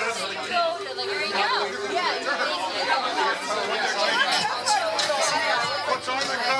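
Crowd chatter in a packed bar: many people talking at once, overlapping conversations with no single voice standing out.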